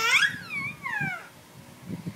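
Baby's high-pitched squeal that rises sharply, then slides down twice, dying away about a second in.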